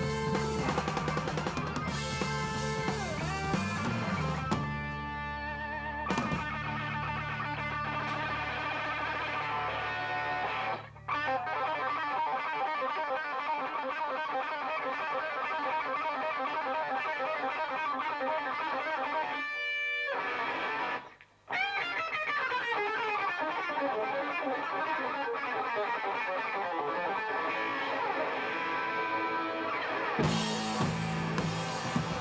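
Live rock recording of a Gibson ES-335 electric guitar playing a solo passage. A low accompaniment sits under it for the first dozen seconds and then drops out, leaving the guitar alone, with two brief drops in the sound partway through.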